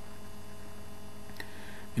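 Steady electrical mains hum in the recording, with a single faint click about a second and a half in.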